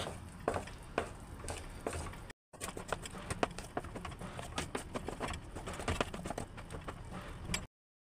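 Thick, soft soap paste being stirred and mashed by hand in a metal bowl: irregular wet clicks and taps, with flour worked in so the batch that failed to set will hold together. The sound cuts out briefly twice.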